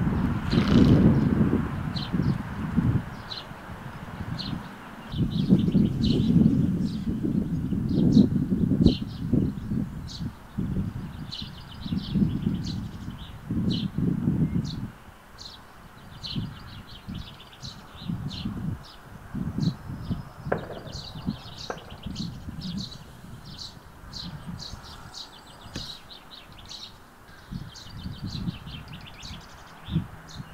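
Small birds chirping and singing throughout, many short calls one after another. Gusts of wind rumble on the microphone, heaviest in the first half.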